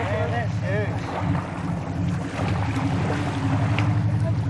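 A boat's engine running steadily, with water rushing and splashing along the hull. A voice is heard briefly in the first second.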